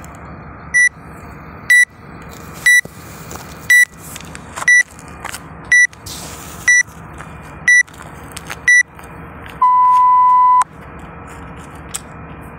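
Workout interval timer counting down: nine short high beeps about one a second, then one long, lower beep lasting about a second that signals the start of the first work round. A steady hiss runs underneath.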